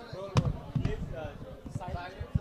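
Background voices murmuring in a hall, with a sharp knock about a third of a second in and a run of short, dull low thumps.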